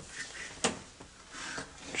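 A front door being opened by hand, with one sharp click a little way in and faint rubbing.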